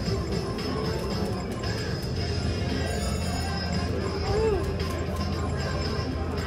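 Casino floor din: background music and the chatter of voices over a steady low hum, with a few short gliding tones from the machines or voices.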